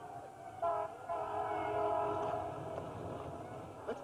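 A long horn blast, a chord of several steady notes held for a couple of seconds and then fading, over a low vehicle rumble.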